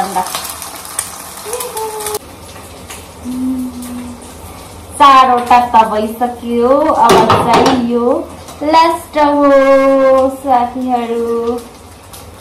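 Eggs sizzling on a flat iron pan, with a metal spatula scraping and clinking against it. From about five seconds in, a woman's voice comes in louder over it, with long held, sung-sounding notes.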